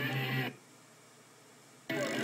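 Punk rock band playing live with electric guitar: a short loud burst at the start, then a break of about a second and a half before the band comes back in just before the end.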